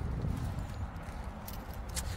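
Wind rumbling on a phone's microphone, with footsteps on gravel as the person filming steps back.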